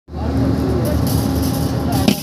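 A steady low engine hum with a held mid-low tone, and faint voices in the background.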